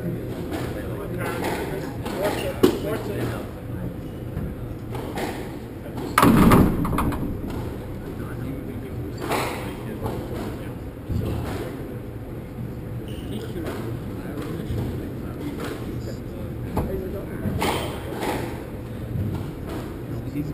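Squash rally: the ball is struck by rackets and hits the court walls in a run of sharp knocks, with low voices underneath. The loudest sound is a heavy thud about six seconds in.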